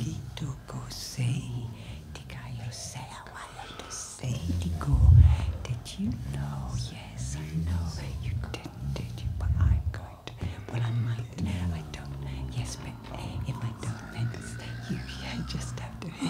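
Free-improvised wordless vocal trio: low pitched voices sliding and bending in pitch, with whispers and hissing breath sounds over them. The low voices swell loudest about five seconds in and again near ten seconds.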